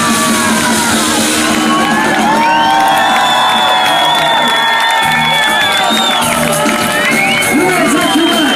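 Live band music through a concert PA system, with the crowd cheering and whooping over it.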